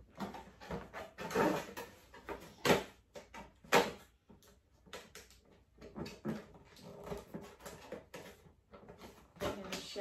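A cardboard tripod box being handled and opened, with a run of scrapes, rustles and knocks; the two sharpest knocks come about three and four seconds in. Soft voice-like murmurs come and go between them.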